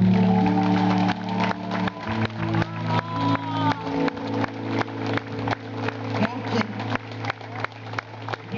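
Live band music: a low chord is held, and from about a second in a steady beat of sharp hits comes a little over twice a second, with some voices over it.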